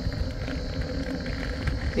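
Car driving uphill: a steady low rumble of engine and tyre noise.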